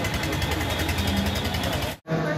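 An engine running with a steady, rapid rattle, under the voices of a crowd of people.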